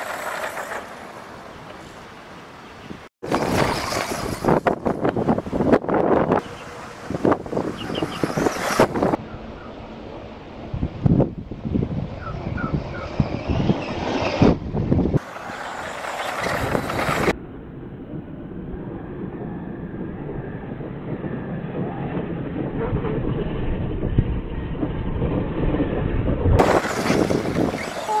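Radio-controlled short-course truck driving fast on grass, its motor running and tyres churning the turf. The sound changes abruptly several times.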